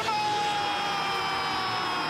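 A television football commentator's long drawn-out goal shout, one held vocal note whose pitch sinks slowly, over steady stadium crowd noise.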